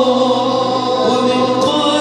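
Male choir singing an Arabic Islamic devotional song (nasheed) together, long sustained notes with a slowly wavering melody.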